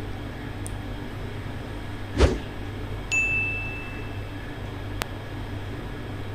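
Metal spoon stirring masala-coated mutton in an aluminium pressure cooker, with a knock about two seconds in and, about a second later, a single clear high ringing tone lasting about a second, over a steady low hum.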